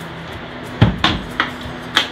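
Four short wooden knocks as a two-by-four platform frame is shifted and set down on a whiskey barrel's head. The loudest knock comes about a second in.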